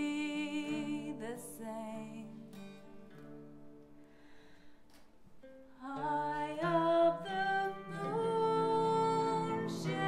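A woman singing a slow folk lullaby, accompanied by a plucked steel-string acoustic guitar. The music thins to a soft lull a few seconds in, then swells again at about six seconds.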